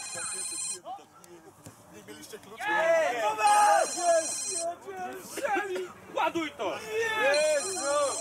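A phone ringing in bursts of about a second each, repeating roughly every four seconds, three times, mixed with people's voices.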